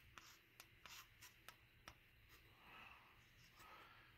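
Near silence, with several faint clicks in the first two seconds as buttons on a Prilotte 3-channel dash cam are pressed.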